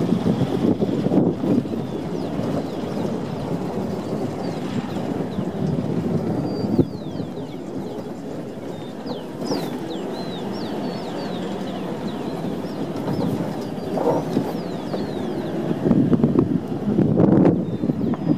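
Vehicle driving along a rough dirt road: a steady rumble of engine and tyres with some wind on the microphone. In the middle of the stretch there is a run of short, high, falling chirps.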